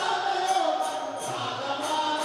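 A group of voices singing a devotional chant together, with jingling percussion keeping a steady beat of about three strikes a second.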